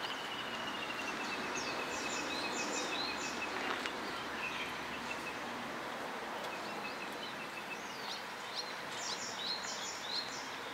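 Wild birds calling over a steady outdoor background hiss. One bird gives a long, fast trill of evenly spaced notes that slides slightly lower over the first half, and sharper high chirps come in short groups near the start and again near the end.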